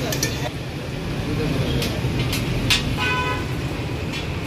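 Busy street-stall ambience of background chatter and traffic noise, with a vehicle horn tooting briefly about three seconds in and a few sharp clacks of cooking utensils.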